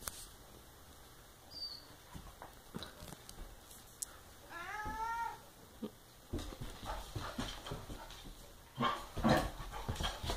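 Husky/Lab mix puppy giving one short whine about halfway through. It is followed by scuffling and paw clicks on a tile floor as the puppy and a cat tussle, loudest near the end.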